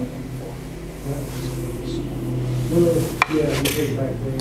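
Wooden jo staff and wooden practice sword knocking together in a single sharp clack about three seconds in, over a steady low hum and faint voices in the hall.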